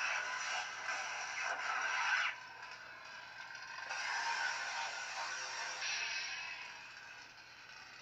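Crackling, unstable lightsaber sound font from a Proffieboard-driven Kylo Ren crossguard saber's speaker, over a faint low hum. Two long swells of swing sound rise out of it: one for the first two seconds or so, and another about four seconds in.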